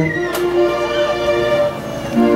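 Live band music: held melody notes over sustained chords. The music opens with a short upward slide in pitch.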